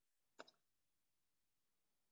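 Near silence, broken by one short double click about half a second in.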